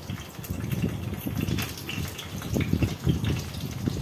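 Hot oil sizzling irregularly in a stainless-steel kadai with cumin seeds, curry leaves and a bay leaf tempering in it.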